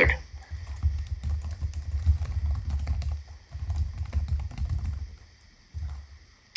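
Computer keyboard typing picked up on an open microphone: rapid, irregular key clicks over a low rumble, stopping about five seconds in.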